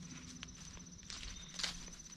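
Soft footsteps of a hiker walking on a grass path, with a steady, high, rapidly pulsing insect trill behind them.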